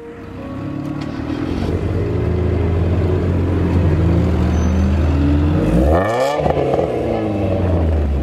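Car engine running at a steady idle, revved once about six seconds in, its pitch climbing quickly and falling back to idle.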